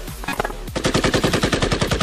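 Automatic gunfire, a fast, even stream of shots that starts about three-quarters of a second in.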